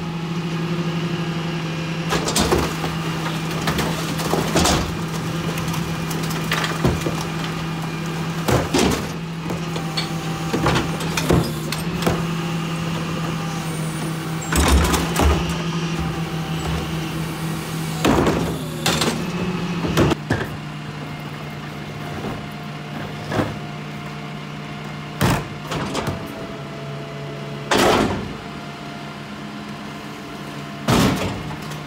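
Rear-loader garbage truck running stationary with a steady low hum, while its rear cart tipper lifts and dumps wheeled carts into the hopper. Sharp plastic-and-metal bangs and clanks come every second or two as the carts hit the lifter and hopper.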